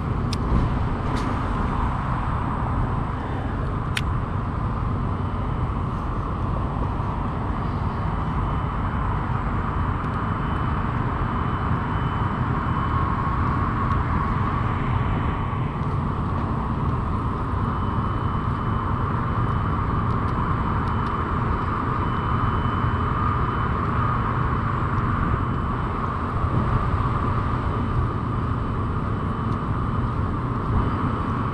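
Steady outdoor noise: wind buffeting the microphone over a constant rumble of distant road traffic. A few sharp clicks sound in the first few seconds.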